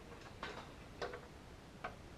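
Three sharp wooden knocks about two-thirds of a second apart, as a plywood triangle gusset is handled and knocked against the top of a wooden post.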